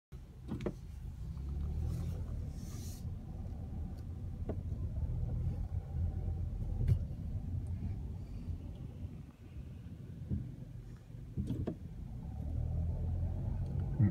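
Low, steady rumble of a car's engine and tyres heard from inside the cabin while driving slowly, with a few sharp clicks scattered through it.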